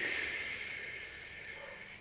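A long breath out through the mouth, starting strongly and fading away over about two seconds, during a slow stretch.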